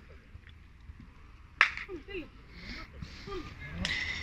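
Two sharp smacks about two seconds apart, the first the loudest sound, over a low open-air background with a few faint, distant voices calling in between.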